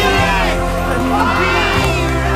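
A crowd cheering and shouting over a music track with steady held bass notes, the chord shifting near the end.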